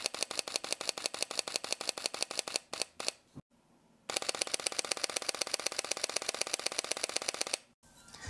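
Sony a7 IV mechanical shutter firing in continuous burst: a first run of about seven clicks a second, the uncompressed raw rate, stops a little before three seconds in. After a short pause a faster run of about ten clicks a second, the compressed raw rate, starts about four seconds in and stops shortly before the end.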